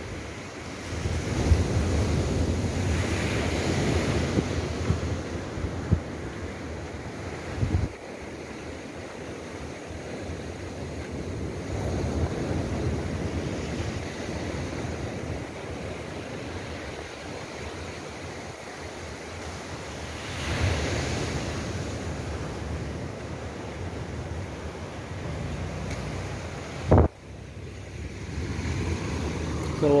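Surf breaking and washing up a sandy beach, swelling and easing every several seconds, with wind rumbling on the microphone. A single sharp thump near the end.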